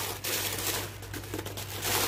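Plastic mailer bag and newspaper wrapping rustling and crinkling as they are handled by hand to unwrap two papayas.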